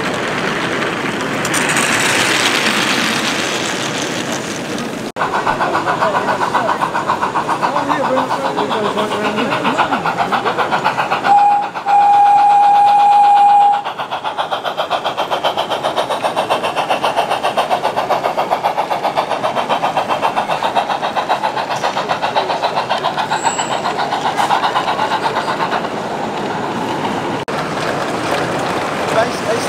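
16mm-scale model steam locomotive chuffing at a fast, even beat, with one steady whistle blast of about two seconds a little before halfway. A crowd is chattering behind it.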